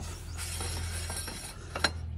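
Metal clinking at a Willys jeep's front manual locking hub as its cover plate is knocked loose and pulled off by hand. A light rattle is followed by one sharp clink near the end.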